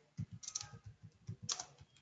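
Faint keystrokes on a computer keyboard: about ten key presses at an uneven pace as a few words are typed.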